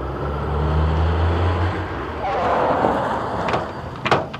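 GAZ-24 Volga taxi driving up, its engine a steady low hum that drops away a little under halfway through, followed by a rushing hiss of tyres as the car draws up to the kerb. A couple of light clicks come near the end.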